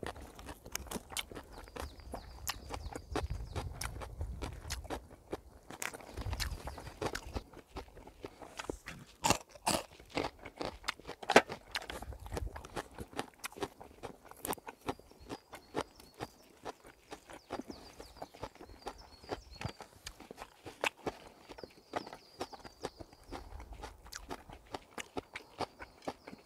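A person eating a meal: chewing and crunching with irregular sharp clicks of utensils against the food container, the loudest clicks about nine and eleven seconds in. Occasional low rumbles run underneath.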